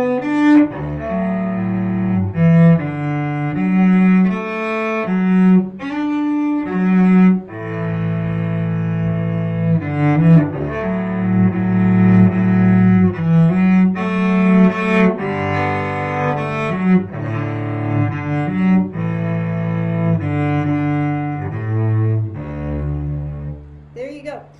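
Solo cello, bowed, playing a slow Celtic tune in D with chord notes added to the melody as double stops. It ends on a long low note.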